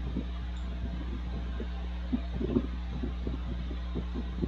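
Steady low electrical hum of a recording setup with no speech, with a few faint soft sounds around the middle.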